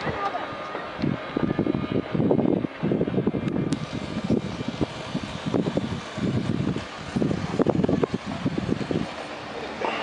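Indistinct voices talking, no words clear.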